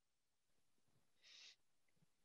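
Near silence, with one faint, brief hiss about a second and a quarter in.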